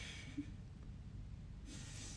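A quiet pause with a steady low hum and a woman's faint breaths: a soft one at the start and a stronger intake of breath near the end.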